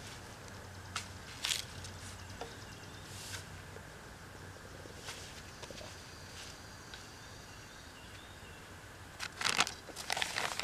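A garden hoe chopping and scraping into loose tilled soil a few times, with a quick run of rustling and scraping near the end.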